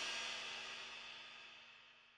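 Cymbals left ringing after the final hit that ends a metalcore song, decaying steadily, with a faint held low note underneath, and fading out about three quarters of the way through.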